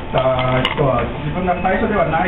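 A person speaking, most likely a man's voice, which the transcript missed; a single sharp click sounds about two thirds of a second in.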